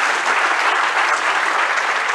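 Lecture-hall audience applauding steadily at the end of a talk.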